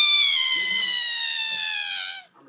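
A cat's long drawn-out yowl: one held call that slowly falls in pitch.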